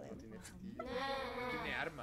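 A person's drawn-out, wavering vocal cry lasting about a second, starting a little under a second in, after softer talk.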